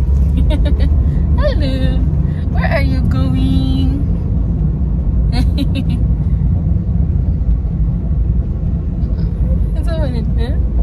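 Steady low road and engine rumble of a moving car heard from inside the cabin, with a baby's babbling and squeals about two seconds in and again briefly near the middle.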